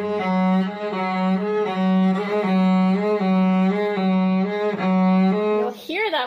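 A single bowed cello note, held for about six seconds. Its pitch slowly rocks back and forth between two close pitches, a little more than once a second, in an exaggerated practice vibrato. The note stops near the end.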